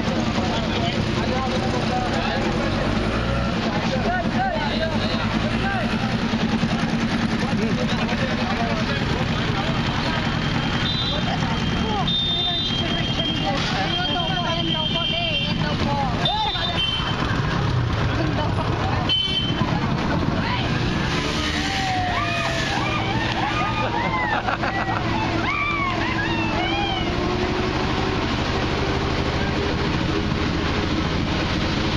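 Motor vehicle engine running steadily while driving along a road, with people's voices talking over it.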